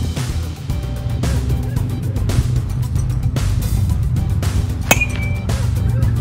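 Background music with a steady beat. About five seconds in, a baseball bat hits a pitched ball once, with a sharp crack and a brief ringing ping.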